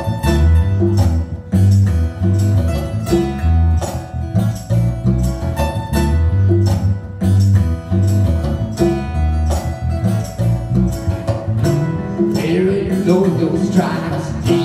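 Live acoustic guitar strumming a steady rhythm over a low, plucked bass line in an instrumental passage. A voice comes in singing near the end.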